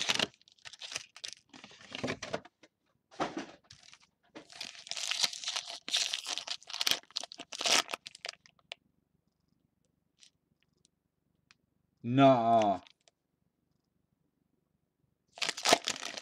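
Foil wrapper of a baseball card pack crinkling and tearing as it is ripped open by hand, a run of irregular rustles over the first eight seconds. About twelve seconds in comes a brief sound from a man's voice.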